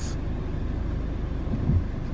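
Steady low rumble of a car driving slowly, heard from inside the cabin: engine and road noise.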